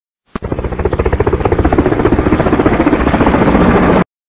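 An intro sound effect: a loud, rapid pulsing rattle that starts suddenly, grows steadily louder and cuts off abruptly at the end.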